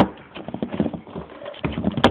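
Irregular knocks, clicks and rustling of a cardboard Easter-egg box being handled and worked open close to the microphone, with a sharp knock at the start.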